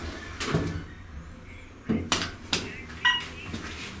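Otis elevator doors sliding shut and the car getting under way, with several sharp clunks about two seconds in and a short high ringing tone about a second later.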